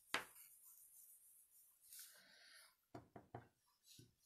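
Faint brushing and tapping of a Stampin' Up blending brush working ink onto cardstock: one sharp tap just after the start, a soft rustle about two seconds in, then a quick run of three or four taps near the end.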